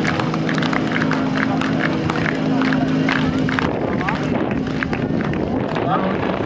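Music over a public-address system with the chatter of spectators' voices; the music cuts off about three and a half seconds in, leaving the voices.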